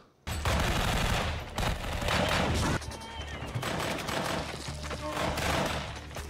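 War-film battle soundtrack: sustained heavy gunfire, many rapid shots overlapping. It starts abruptly about a quarter second in and eases somewhat after about three seconds.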